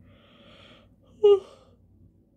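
A woman yawning behind her hand: a long, faint, breathy intake, then a short, loud voiced sigh a little over a second in as the yawn releases.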